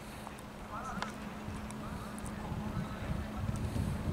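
Faint, distant shouts of players on a football pitch over a low, steady rumble and hum of the outdoor background.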